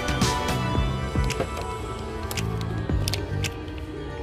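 Background music with a held melody note, moving bass notes and sharp percussion hits.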